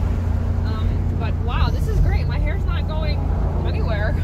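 Steady low drone of a BMW M850i convertible cruising at about 55 mph with the top down: its turbocharged V8 and road noise, heard from inside the cabin, with a voice talking over it.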